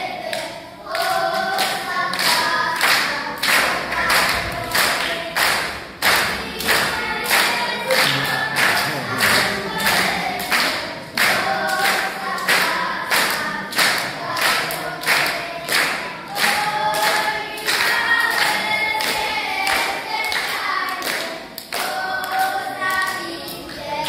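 Children singing a folk song together without instruments, their feet stamping on the wooden stage in a steady beat about twice a second as they dance in a ring.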